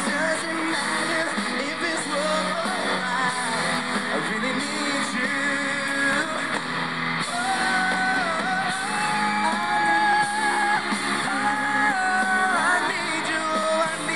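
Live pop performance: a male lead singer sings a held, wavering melody into a handheld microphone over a backing band with guitar.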